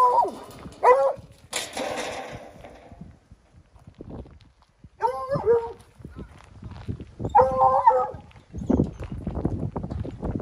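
A dog giving several short, high-pitched whining calls: one at the start, one about a second in, and two more about halfway through and near the three-quarter mark. A scuffing noise follows near the end.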